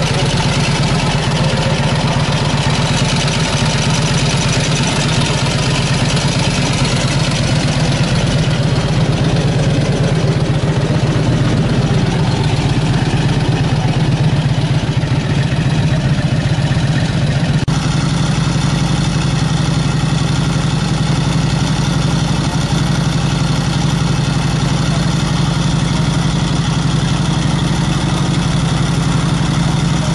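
Vintage Indian Chief Roadmaster's V-twin engine idling steadily, with an abrupt change in tone about two-thirds of the way through.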